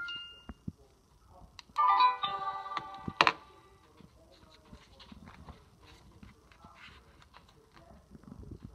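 LeapFrog Tag reading pen's small speaker playing a short electronic tune, several steady notes at once, about two to three seconds in. It ends with a sharp knock as the pen is set down on the wooden table, then faint handling noise.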